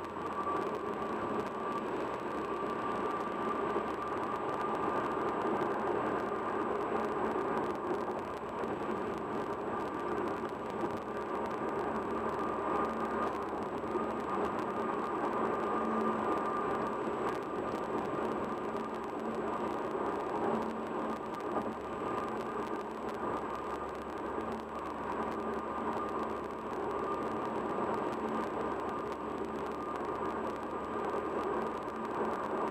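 Steady road noise inside a car cabin at highway speed: tyres on the pavement and the car's engine, with an even hum that holds without change.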